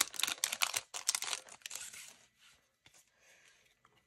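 Foil wrapper of a Bowman University football card pack being torn open and crinkled: dense, sharp crackling for about the first two seconds, then faint rustling as the cards come out.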